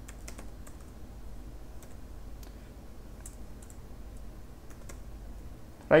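Computer keyboard typing: scattered, fairly quiet keystrokes in irregular short runs over a steady low background hum.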